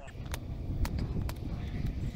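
Steady low wind rumble on the microphone, with a few faint scattered clicks.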